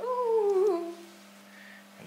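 A single hummed vocal sound, about a second long, that gliding downward in pitch with a small wobble before it fades.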